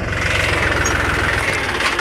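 Mahindra 275 DI tractor's three-cylinder diesel engine running close up with a steady, rapid beat. Its note shifts slightly about one and a half seconds in.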